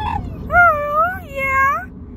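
Pit bull 'talking': two drawn-out, howl-like vocalizations, each wavering up and down in pitch, over the low rumble of a moving car.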